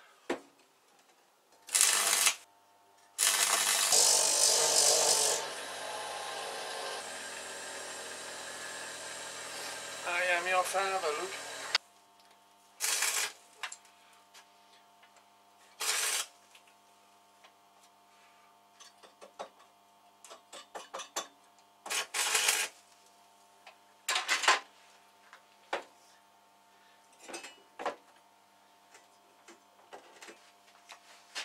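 Stick (arc) welder on steel: several short bursts of welding, one about two seconds long and the rest about half a second each, as the arc is struck for tack welds. A steady hum runs underneath, with small clicks and taps between the later welds.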